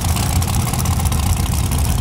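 Top Dragster's Riolo race engine idling: a steady, low rumble made of rapid firing pulses.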